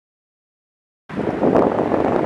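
Silence for about the first second, then outdoor noise cuts in suddenly: a steady rushing of wind on the microphone.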